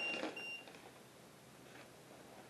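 Two short, high electronic beeps about half a second apart, from a ghost-hunting gadget on the table, then faint room tone.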